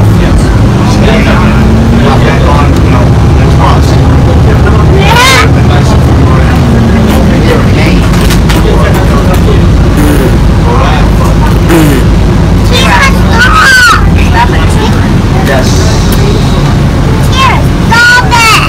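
Inside a moving bus: a steady, loud engine and road rumble, with indistinct voices now and then.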